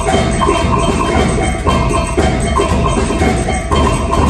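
Concert band playing: wind instruments over percussion, with a short rhythmic figure repeating about twice a second.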